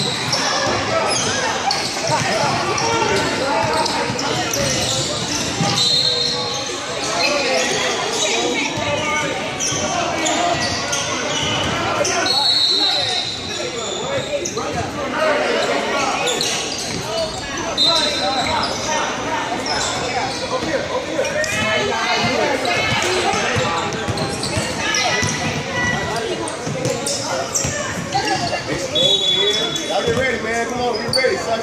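Basketball game sounds in a gymnasium: the ball bouncing on the hardwood court and players and spectators calling out, echoing around the large hall. A few short, shrill high tones cut through.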